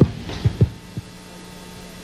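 A few short, low thumps in the first second, then a steady low electrical hum with faint hiss from an analog TV recording, with no programme sound over it.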